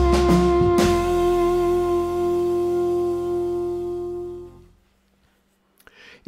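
Jazz play-along backing track ending: the melody's final note is held for about four seconds over the band, with drum hits and a cymbal crash in the first second, then the note stops.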